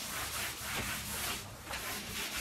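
Rough side of a cleaning cloth rubbing over a sprayed kitchen cabinet door, scrubbing off softened sticky grime with a steady scuffing hiss that eases briefly about one and a half seconds in.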